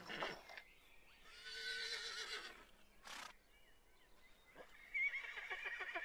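A horse whinnying twice: a wavering call a little over a second in, and another from about five seconds in, with a short sharp sound between them.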